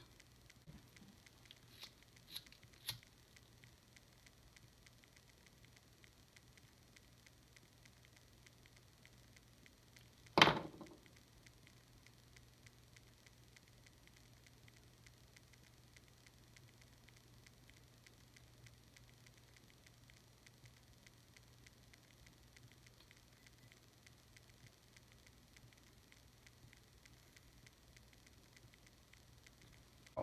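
Quiet room with a faint steady low hum, while a small plastic toy figure is handled: two faint clicks about two and three seconds in, and one sharp, loud click about ten seconds in.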